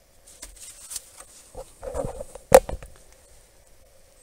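Gloved hands handling a plastic glow plug harness in an engine bay: small clicks and rustling, with one sharp knock about two and a half seconds in.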